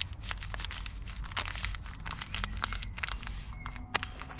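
Energy gel sachets crinkling and running-shorts fabric rustling as the gels are pushed into the small waistband stash pockets. It comes as a steady run of small, irregular crackles.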